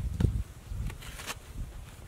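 A metal-bladed digging tool strikes and pries into hard, dry, cracked mud clods, giving dull thuds and scrapes. The loudest thud comes just after the start, and a couple of sharp cracks follow about a second in.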